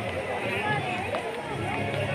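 Voices of a crowd of visitors talking, several people at once, with no clear words standing out.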